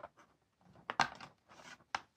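Plastic clicks and scrapes as the bottom access cover of an Acer Aspire E1-571G laptop is prised off by hand, its clips snapping loose. The sharpest click comes about a second in, with another near the end.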